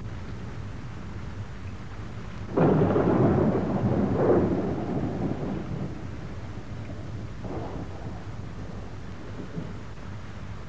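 A sudden deep rumble about two and a half seconds in, swelling once more a couple of seconds later and dying away, with a fainter rumble near the end, over a steady low hum.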